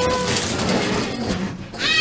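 Plastic bag of Lego pieces crinkling and rustling as it is handled and opened, with a child's voice rising in near the end.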